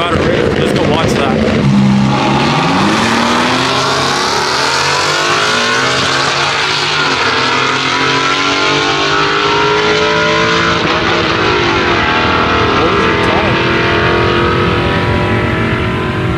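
Drag racing cars accelerating down the strip, their engine notes climbing in pitch and dropping back as they shift through the gears, repeated over several seconds.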